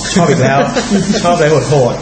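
Speech: a man talking, with a steady hiss underneath.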